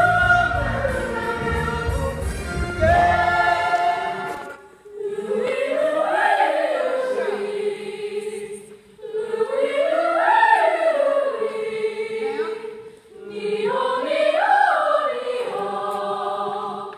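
A group of young voices singing together in unison: three phrases, each rising and then falling in pitch, separated by short breaks. Before them, for the first few seconds, a music track with a bass beat plays and is cut off.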